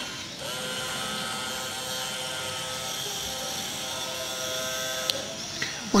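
Small 9-volt DC toy motor with a pulley on its shaft spinning freely at high speed: a steady whine. A short click comes about five seconds in.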